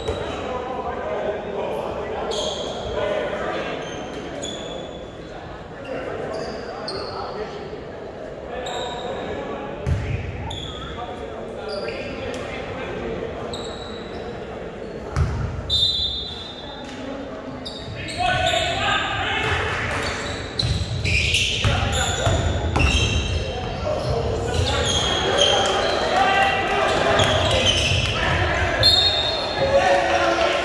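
Basketball being dribbled on a hardwood gym floor, with sneakers squeaking and players calling out, echoing in a large hall. The play grows louder and busier about two-thirds of the way in.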